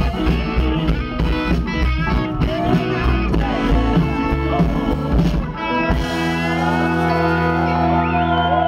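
Live rock-and-soul band playing loud, with electric guitars, bass, drums and keyboard. About six seconds in the drums stop and the band holds one long chord, with bending notes above it.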